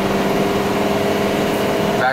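Ford E450 cutaway box truck's engine and road noise while driving, heard inside the cab as a steady hum with a few held tones.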